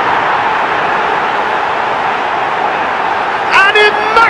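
Football stadium crowd cheering in a steady din just after a goal has been scored.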